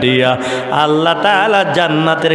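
A man's voice chanting in long, held, melodic notes, with a wavering note about halfway through. This is the sung delivery of a Bengali waz sermon.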